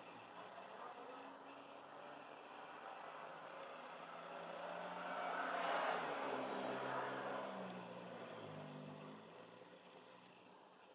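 A vehicle passing by, its engine hum and tyre noise swelling to a peak a little past the middle and then fading away.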